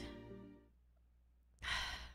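Music fades out, then after a near-silent pause a person lets out a short breathy sigh near the end.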